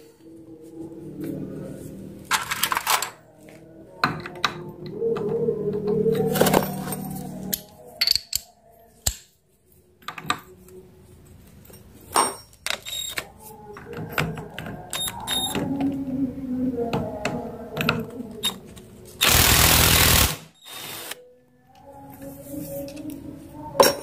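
Socket wrench and metal parts clicking, knocking and scraping on a four-stroke motorcycle clutch as the clutch centre nut is loosened and taken off. Late on there is one loud, rasping burst about a second long.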